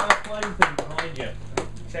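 A small audience clapping unevenly after a song, the claps thinning out and stopping about three-quarters of the way through, with people talking over them.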